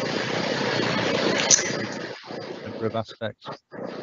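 A person's voice coming through a video-call link, badly distorted: for about two seconds it is smeared into a harsh noisy wash, then it breaks up into short choppy fragments with dropouts between them. This is a fault in the call's audio.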